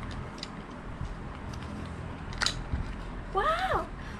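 A small cosmetic box and jar being opened by hand: light handling clicks, then one sharp click about two and a half seconds in. A short wordless vocal sound follows near the end.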